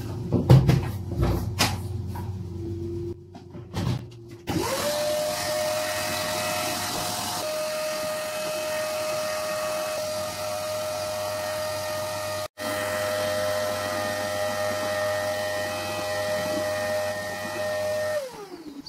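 Workshop vacuum cleaner started about four and a half seconds in, after a few clatters of handling, its motor whine rising quickly and then running steadily as it sucks up wood shavings.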